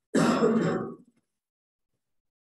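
A man clearing his throat once, a rough burst about a second long that cuts off sharply.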